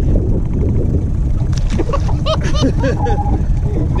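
Wind buffeting the microphone, a steady low rumble with no letup.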